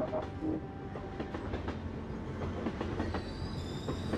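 Train running on rails: a low rumble with a rapid, irregular clatter of wheel clicks, and a high, steady wheel squeal coming in near the end.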